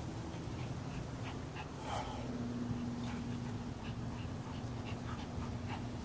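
Small dog sounds during rough play between a Yorkshire terrier and a husky: scattered short, faint sounds, with one louder one about two seconds in. A steady low hum runs underneath.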